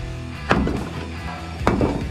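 Two heavy sledgehammer blows on a large rock, one about half a second in and one near the end, each a sharp crack.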